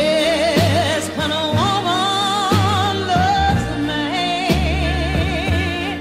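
Slow blues music: a high melody line held with wide vibrato, sliding up between notes, over bass and drums.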